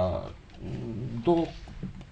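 A man's voice hesitating mid-sentence: a drawn-out vowel at the start, then quieter hesitation sounds and a short syllable.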